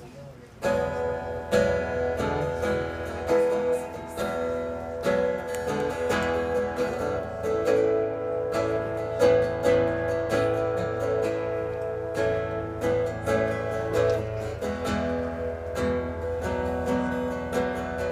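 Solo acoustic guitar playing ringing chords with steady plucked strokes. It begins about a second in, after a brief quiet moment.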